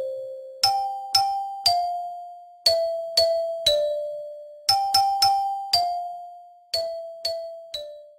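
Theme music: a bell-like chime playing a simple melody of single ringing notes, each fading away, in groups of three that step down in pitch on the last note.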